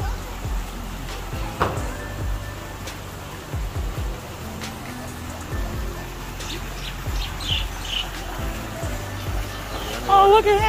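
Background music playing steadily, with a few short high bird chirps over it a little past the middle.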